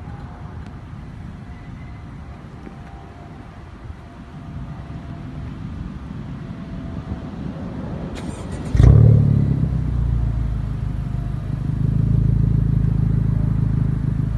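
Honda Civic Type R's turbocharged 2.0-litre four-cylinder engine, breathing through an aftermarket Fi Exhaust triple-tip system, starting up about eight seconds in. It flares loudly and then settles into a steady idle. Before that there is only low background noise.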